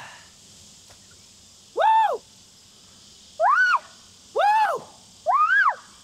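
A bird calling four times, each a short call of about half a second that rises and falls in pitch, roughly a second apart.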